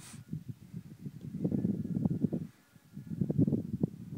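Wind buffeting the microphone in gusts, a low rumble that swells twice and drops away briefly between.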